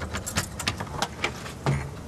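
Keys jangling in a run of light, irregular clicks, over a low steady rumble.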